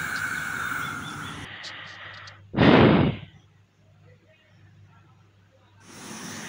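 Heavy rain hissing and fading, then a single thunderclap about two and a half seconds in: a sudden crack that dies away within a second.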